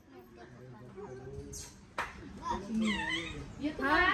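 Quiet voices with short, high-pitched sliding vocal sounds, and a single sharp click about two seconds in.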